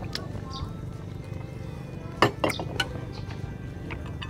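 Cutlery and dishes clinking at a meal table, with three sharp clinks in quick succession a little past halfway.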